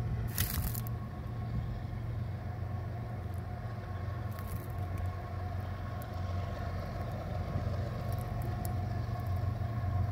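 Freight train rumbling by the track: a steady low drone with a faint, steady ringing tone above it, and a short scraping hiss about half a second in.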